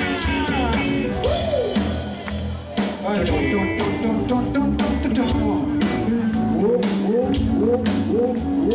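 Live rock band playing through the PA, with electric guitar and drums, and a man's voice on the microphone over it.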